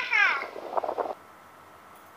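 A girl's high-pitched, drawn-out vocal call sliding down in pitch, like a meow. It ends in a short buzzy, pulsing stretch and cuts off about a second in, leaving quiet room tone.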